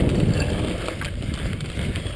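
Mountain bike descending a rough dirt singletrack at speed: the rumble and rattle of tyres, chain and frame over the trail, mixed with wind rushing over the camera microphone, and a few sharp clicks from the bike jolting over bumps.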